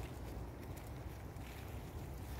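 Steady low rumble of wind and handling noise on a phone microphone carried on a walk, with faint rustling of leaf litter.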